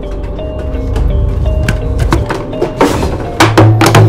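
Horror film score: held, eerie notes with sharp wooden knocks that come faster and louder, the strongest hits near the end, as a low drone comes in.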